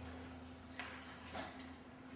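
Quiet auditorium room tone with a steady low hum. Two faint, brief rustling noises come about a second and a second and a half in.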